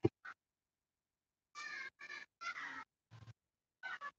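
A sharp knock from the phone being bumped as it is set up, with a lighter click just after. From about a second and a half in comes a run of short, high-pitched calls with brief gaps between them.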